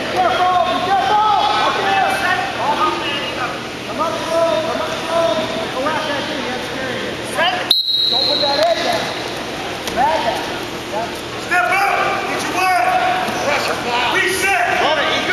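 Men's voices shouting and calling out across the mat, the kind of coaching yells heard during a wrestling bout, with the words not clear. A single sharp click cuts in a little before the middle.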